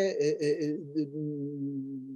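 A man's voice holding a long, level hesitation sound, a drawn-out "yyy", straight after the end of a spoken word. The pitch stays steady and the sound slowly fades.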